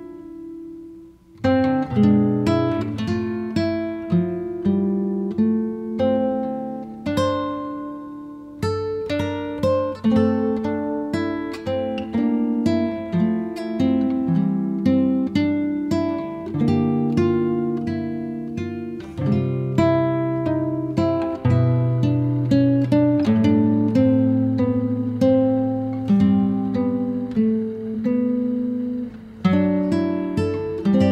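Background music: a solo acoustic guitar playing a run of plucked and strummed notes. It drops out briefly near the start and takes up again about a second and a half in.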